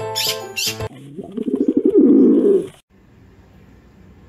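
A magpie fledgling begging to be fed: a loud, rasping, rapidly pulsing call lasting about a second and a half, which cuts off suddenly near three seconds. Background music plays in the first second.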